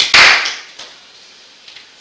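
A single sudden, loud burst of noise lasting about half a second, fading away quickly.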